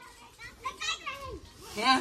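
Children's voices and chatter, faint for most of the time, with a louder voice calling out near the end.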